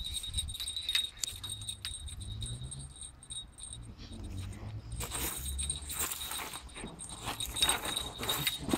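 A spinning reel being worked against a hooked catfish, giving short metallic clicks and rattles that grow busier about five seconds in, over a steady high chirring of insects.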